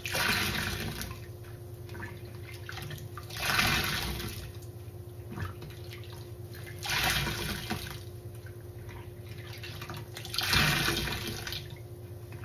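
A soaked foam sponge squeezed and released in a sink of soapy rinse water: four squishy splashes about every three and a half seconds, with quieter dripping between them over a steady low hum.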